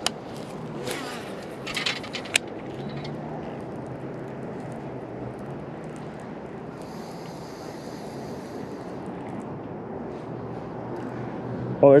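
Spinning reel being worked after a cast: a few sharp clicks in the first couple of seconds, then a steady retrieve under a continuous low hum.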